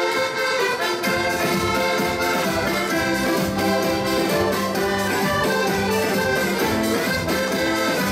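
Accordion playing a lively dance tune with a steady beat underneath.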